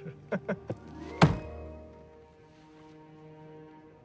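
Film score sting: a few light clicks, then a single sharp, heavy hit about a second in, followed by a held musical chord that fades down and lingers.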